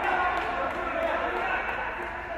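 Several people's voices calling out and overlapping at once, with no single clear word standing out.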